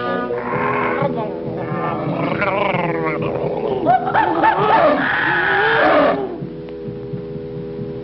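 Orchestral cartoon score with loud animal roars and cries over it, wavering up and down in pitch, for the first six seconds; then the music goes on alone, quieter.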